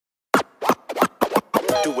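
DJ turntable scratching: a quick run of short scratches opening a hip hop track, with a voice coming in near the end.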